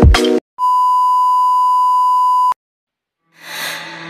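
A steady electronic beep tone, about two seconds long, that cuts off sharply; a hiss fades in near the end.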